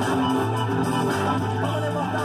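Music playing from a JVC UX-A3 micro component system through its small plastic speakers. The set is on FM, and because the added auxiliary input is wired straight into the circuit, the auxiliary music mixes with the FM radio audio.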